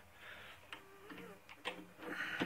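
Faint handling noise: a few light, sharp clicks and taps, about five of them and mostly in the second half, as the wooden goblet is picked up.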